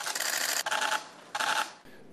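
Press camera shutters firing rapidly, a dense rattle of clicks that stops about a second in, followed by a shorter second burst.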